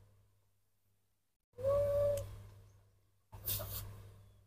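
A baby monkey gives one short, steady, pitched call about halfway through. A brief hissy burst of noise follows near the end.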